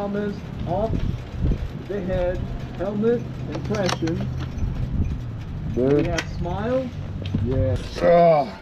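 Voices talking in short bursts over a steady low hum from an idling motorcycle engine, which cuts off suddenly just before the end.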